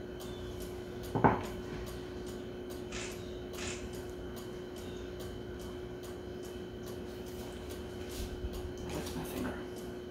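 A plate set down on a countertop with one sharp knock about a second in, followed by a few faint clinks and handling noises from the plate and cookies, over a steady faint hum.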